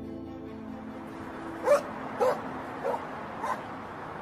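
A dog barking four times, a little over half a second apart, over the fading tail of soft sustained music.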